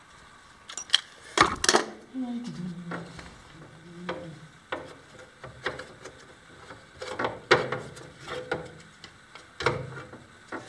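Sharp metallic clicks and clanks from sheet-metal work, as galvanized steel angle legs are fitted by hand to a fiberglass seat shell. A loud cluster of snaps comes about a second and a half in, followed by single clicks about once a second.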